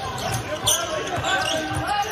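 A basketball dribbled on a hardwood court, bouncing in a steady rhythm under voices in the arena, with a short high sneaker squeak less than a second in.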